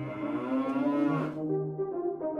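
A single long cow moo that rises slightly in pitch and cuts off about a second and a half in. It sounds over background music of sustained horn-like notes.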